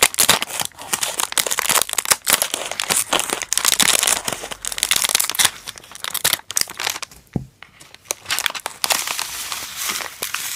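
Plastic wrapper of a Kracie Poppin' Cookin' candy kit crinkling and crackling as it is cut open with scissors and handled, with many sharp clicks and one low knock about seven seconds in.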